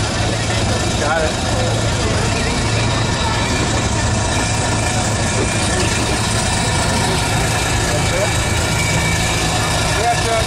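An engine running steadily at idle, a constant low hum, under the chatter of a crowd.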